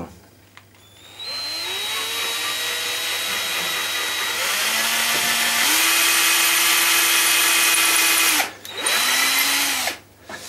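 Electric drill with a long twist bit boring through wood, the hinge-pin hole through the box's hinge knuckles. The motor spins up about a second in, runs steadily with a change in pitch partway through, stops, then gives one short burst near the end.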